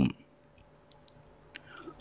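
The end of a spoken word, then near silence with two faint, short clicks about a second in.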